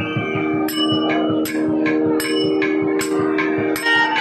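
Carnatic concert music in a pause of the melody: a steady drone under five evenly spaced, bell-like metallic strikes that ring on, about one every three-quarters of a second, keeping time over light drum strokes.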